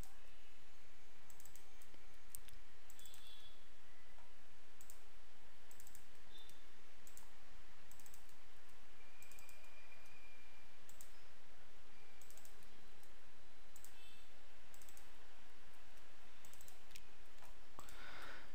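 Faint, scattered clicks of a computer keyboard and mouse as code is typed and edited, irregular and sometimes in small clusters, over a steady low hum.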